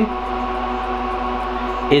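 Steady whir of a Lenovo x3650 M4 rack server's cooling fans: an even hiss with several steady humming tones in it.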